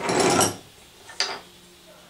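A knife blank and its Celeron handle scale being handled and fitted together on a workbench: a brief scraping rustle at the start, then a single sharp click about a second later.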